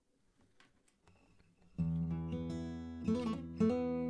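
Acoustic guitar: after a second or so of faint string and hand noises, a chord is strummed about two seconds in and left ringing, then struck again twice near the end.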